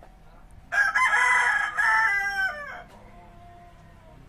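A rooster crowing once: a loud call of about two seconds that starts just under a second in and drops in pitch at the end.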